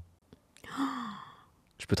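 A person's sigh: a breathy exhale with a short falling voiced tone, under a second long, about half a second in.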